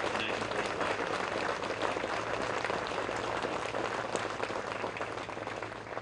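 Audience applauding, the clapping fading away near the end.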